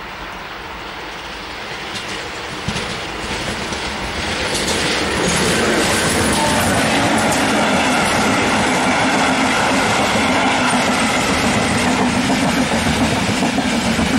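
MÁV V43-class electric locomotive 433 187 and its InterCity coaches approaching and passing close by. The wheel and rail noise builds over the first five seconds, then holds steady and loud as the coaches roll past.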